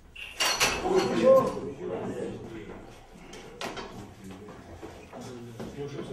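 A man's loud strained cry, loudest about half a second to a second and a half in, over metallic clanks and knocks from a loaded barbell and its iron plates as helpers grab the bar from a failed bench press.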